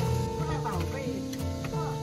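Background music with sustained notes that change pitch slowly.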